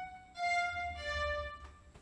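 Sampled orchestral strings patch in AIR Ignite playing two short violin-like notes one after the other, the second a little lower. Each is the preview heard as a note is drawn into the piano roll with the pencil tool.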